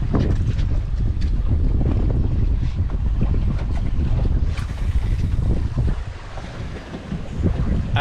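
Wind buffeting the camera microphone on an open fishing boat at sea: an irregular low rumble that eases briefly about six seconds in.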